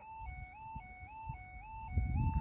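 Footpath level crossing warning alarm starting up as the miniature stop light turns red: an electronic two-tone warble, high and low notes alternating every quarter second, signalling that a train is approaching.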